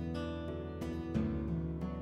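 Background music led by acoustic guitar, with sustained notes that change about every half second to a second.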